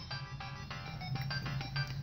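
A child's handheld electronic game playing a tinny beeping tune, a quick run of short electronic notes.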